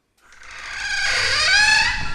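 A pitched sound effect with many overtones, swelling louder over the first second and a half, its pitch dipping and then gliding upward near the end.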